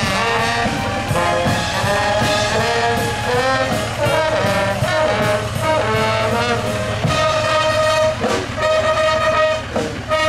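A brass band playing live from a passing parade float, with trombones, trumpets and tuba sounding a tune in held, repeated notes.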